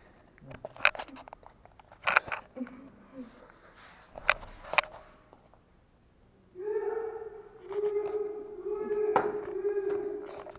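A few sharp smacks, like hands clapping or slapping, in the first five seconds, then a person's voice making long, wordless, steady-pitched sounds in three stretches during the last third.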